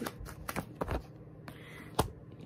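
Tarot cards being shuffled by hand: a run of short card flicks in the first second, then quieter handling, and a sharp tap near the end as a card is set down.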